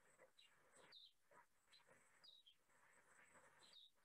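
Near silence, with faint, scattered bird chirps, short falling notes heard several times.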